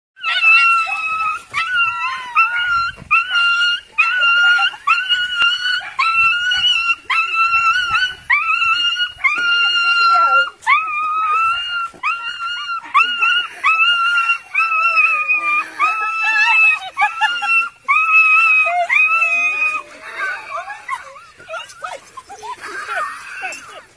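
Schnauzer crying in high-pitched whines and howls, one after another about once a second, an excited greeting to its owner. The cries turn ragged near the end.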